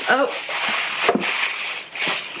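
Packaging rustling and crackling as a boxed item is handled and opened, with a sharp click about halfway through.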